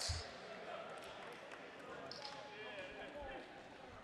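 Rubber dodgeballs bouncing and hitting the hardwood floor of a large gym, with a sharp impact and thud right at the start and another thud about three seconds in, over faint players' voices.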